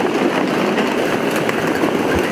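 Loud, steady train noise at a station platform, from a train standing or moving alongside.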